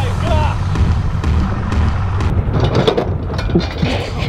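Pontoon boat's outboard motor running with a steady low rumble, with a few brief voices over it.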